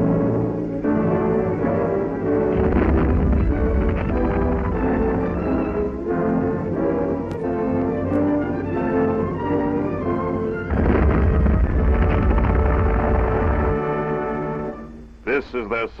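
Dramatic orchestral film score with sustained strings, swelling twice into a heavy low drum rumble, likely timpani rolls. A man's narration begins at the very end.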